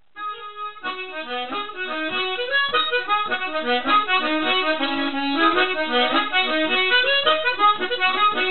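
Background music: a lively instrumental tune that starts a moment in with a brief held chord, then runs on as a quick, busy stream of notes.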